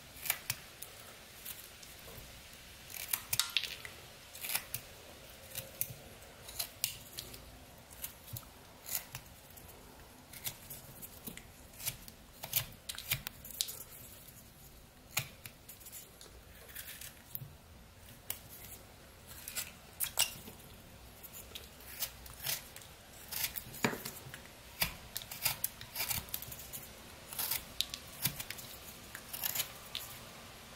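Pocket knife blade slicing through eastern white pine: a string of short, crisp cuts at an irregular pace, some in quick runs, as chips are taken off while whittling.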